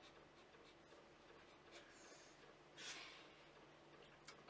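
Near silence, with faint room tone and a low steady hum. A little under three seconds in comes one short, breathy puff of air, a person blowing out a breath.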